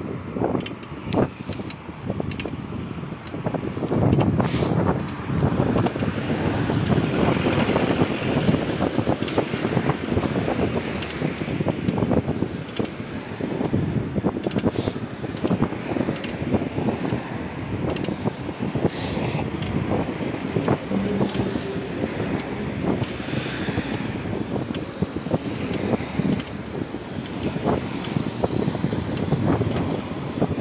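Road noise from a car driving along a city street, with wind buffeting the phone's microphone in a steady, crackly rush.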